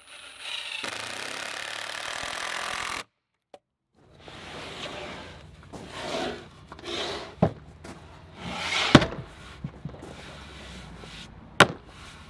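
A Milwaukee M18 Fuel cordless driver runs a long deck screw into a wooden brace for about three seconds, then stops. After a short silence there are irregular creaks, rubs and a few sharp knocks of wood as the finished pine bench is pushed and rocked, the loudest knock about nine seconds in.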